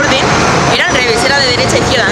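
A woman talking over steady city street traffic noise.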